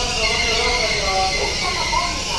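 Steady hiss and hum of an N700S Shinkansen standing at the platform, with a public-address voice over it.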